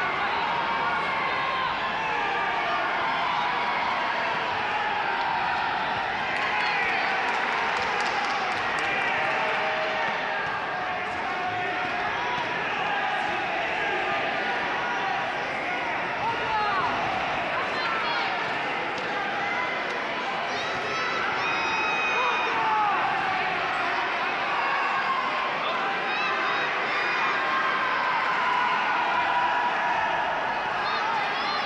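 Spectators in a large sports hall talking and calling out all at once: a steady hubbub of many overlapping voices, with a few high shouts standing out now and then.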